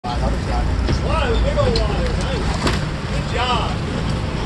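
Boat engine running with a steady low rumble, under excited shouts from people on deck, with a sharp click about two-thirds of the way through.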